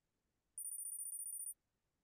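A high, shimmering electronic chime lasting about a second, starting about half a second in: Kahoot's scoreboard sound effect as the players' scores count up.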